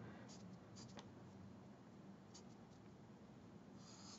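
Faint scratching of a marker tip stroking across drawing paper, a few light strokes over near-silent room tone.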